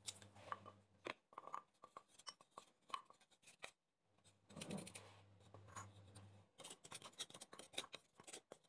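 Faint kitchen handling sounds at a glass salad bowl: a run of small clicks, taps and scrapes, a short pause about halfway, then denser clicking near the end.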